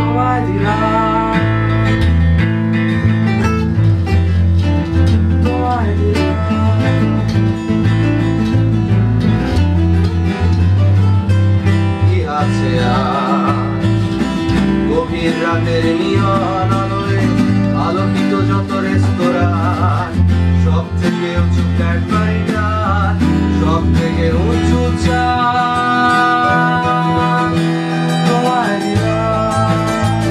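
A band playing live: electric bass guitar under two strummed acoustic guitars, with a man singing at times.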